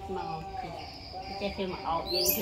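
A person talking, with a faint, steady, high-pitched insect chirring behind the voice.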